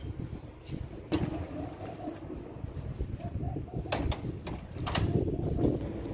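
A bird cooing in low notes, with a few sharp clicks about one, four and five seconds in.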